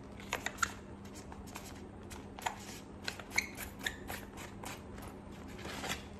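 Handling noise from a flexible US military water bag and its olive fabric cover: a scattered string of small sharp clicks and ticks over faint rustling as the plastic neck, corded cap and cover are worked in the hands.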